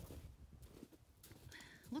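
Faint footsteps crunching in crusted snow, with a low rumble of wind on the microphone.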